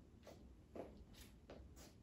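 Near silence: room tone with about four faint, brief rustles and shuffles from a person moving through an arm-circling exercise.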